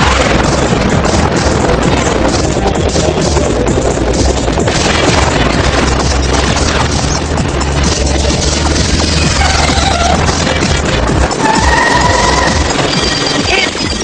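Animated-series battle soundtrack: loud action music mixed with continuous blasting, crashing and gunfire sound effects. A few short whistling electronic tones come in about eleven seconds in.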